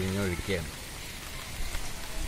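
A man's voice ending about half a second in, then a steady even hiss with a few faint ticks.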